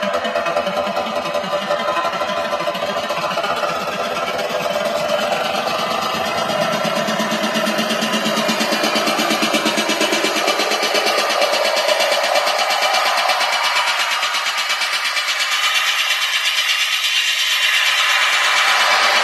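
Melodic techno playing loud over a large venue's sound system: a fast, even, repeating pulse runs throughout. The bass thins out after a few seconds and the level slowly rises, as in a build-up.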